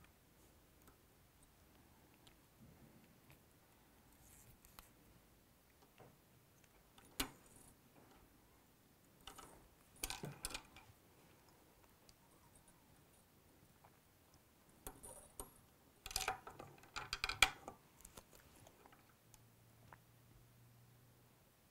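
Faint clicks and small handling noises of fly-tying work at the vise: one sharp click about a third of the way in, then two flurries of light clicking and rustling, the later one, near the end, the loudest.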